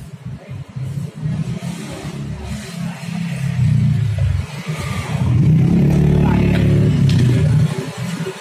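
A motor vehicle's engine running and revving, swelling a few seconds in and loudest in the second half before dropping away near the end.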